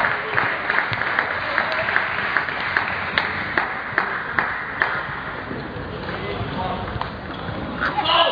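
Table tennis balls clicking off bats and table, a quick run of sharp ticks about two or three a second that thins out after about five seconds, over the steady chatter of a crowded sports hall.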